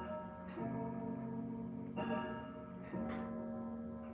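Clock chimes ringing a slow sequence of struck notes, about one a second, three strikes, each ringing on and decaying. The owner thinks the chimes are out of adjustment and not hitting correctly.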